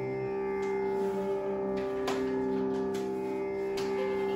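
A steady, tanpura-like drone holding the tonic of Carnatic music, with a few soft plucked notes scattered over it.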